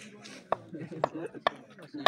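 A cricket bat tapping on the pitch mat at the crease: four sharp wooden knocks, about two a second.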